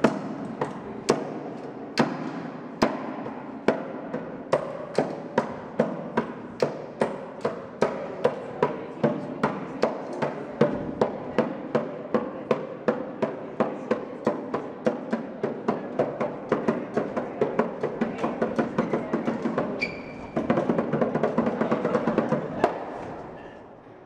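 Hand drum struck with the palms in a steady beat that gradually quickens, turning into a faster, louder passage about twenty seconds in, then stopping shortly before the end.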